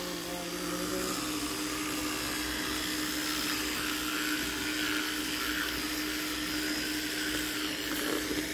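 Electric toothbrush running with its brush head in the mouth against the teeth: a steady buzzing hum on one tone.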